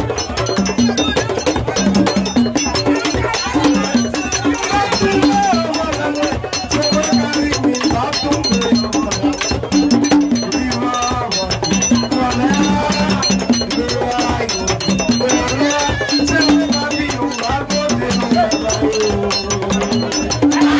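Live Haitian rasin (vodou roots) music: singing voices over a dense, steady beat of percussion with rattles.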